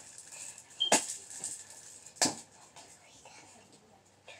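A hand squeezing and pressing fluffy slime in a clear plastic tub, with two sharp clicks about a second and a half apart.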